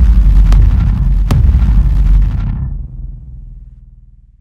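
End-card sound effect: a loud cinematic boom with a deep rumble, two sharper hits about half a second and a second and a half in, dying away over the last second.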